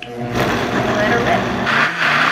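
Vitamix blender motor starting up and running, blending a thick jar of steamed vegetables, oatmeal and applesauce. It gets louder and brighter near the end as the load breaks up.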